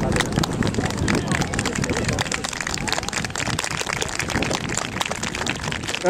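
Crowd of spectators chattering, several voices overlapping, over many small sharp clicks. The voices are clearest in the first couple of seconds and thin out after that.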